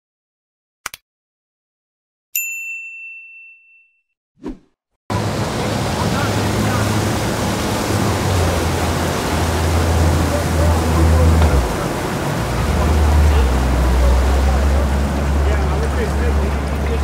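A click, then a bell-like ding that rings out for about a second and a half, and a short swoosh: a subscribe-reminder sound effect. About five seconds in it gives way to the steady low hum of a boat's twin outboard engines running past, with water and wind noise.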